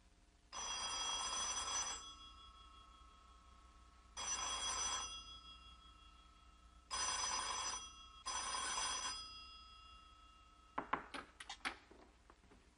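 Telephone bell ringing: four rings, the last two close together. A few sharp clicks follow near the end.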